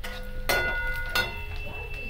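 A metal kitchen utensil struck twice, about 0.7 seconds apart, each strike followed by a clear metallic ring that lingers, the second still ringing at the end.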